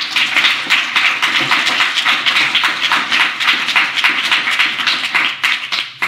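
Audience applauding, many hands clapping at once, dying away near the end.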